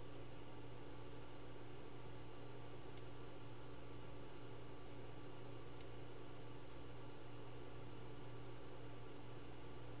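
Steady low hum and hiss of a room with a computer running, with two faint computer-mouse clicks, about three and six seconds in.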